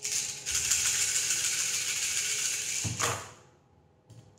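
A handful of small divination pieces rattled rapidly between cupped hands for about three seconds, then a short thump as they are cast down onto the table.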